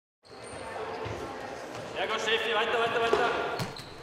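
Sports hall sound of a children's indoor football game: the ball knocking on the wooden floor, with children's voices calling out from about two seconds in, echoing in the large hall.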